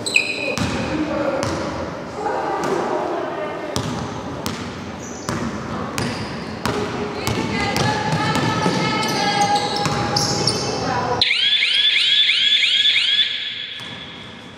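Basketball bouncing and thudding on a wooden sports-hall floor, with players' voices echoing in the large hall. About eleven seconds in, a rapid run of high chirping squeaks lasts about two seconds.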